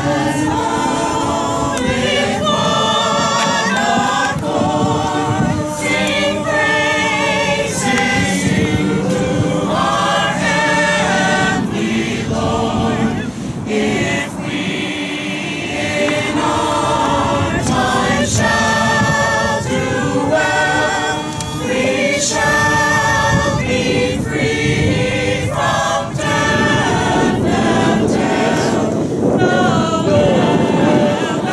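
Mixed-voice group of carolers singing a Christmas carol in parts, phrase by phrase with short breaks between phrases.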